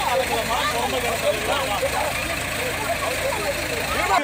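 A JCB backhoe loader's diesel engine idling steadily, a low even hum, under the voices of people talking close by.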